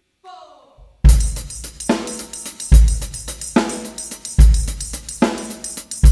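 Live worship band of drum kit, electric guitar, bass guitar and acoustic guitar kicking into an instrumental song intro about a second in, just after a brief spoken word from the leader. Heavy kick-drum and cymbal hits land on the beat.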